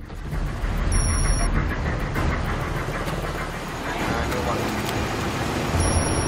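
Street noise at a busy night-time crossroads: road traffic running by and people talking in the background, with a short high-pitched electronic tone about a second in and again near the end.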